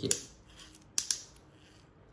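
Plastic gears and levers of a small toy robot's motor gearbox clicking as the mechanism is moved by hand: one sharp click just after the start, then two quick clicks about a second in.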